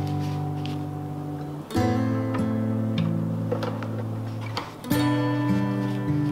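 Background music: strummed acoustic guitar chords, with new chords struck about two seconds in and again about five seconds in.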